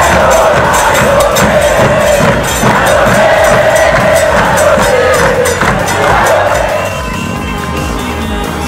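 A crowd of football supporters singing a chant in unison, backed by bass drums, dropping away about seven seconds in.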